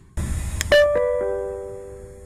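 Brief burst of rumbling noise, then a three-note descending electronic chime, the Berlin tram's signal before its next-stop announcement, ringing on and fading.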